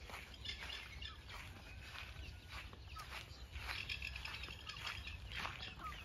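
Faint, scattered bird chirps and short calls, many brief notes at irregular intervals, over a steady low outdoor background.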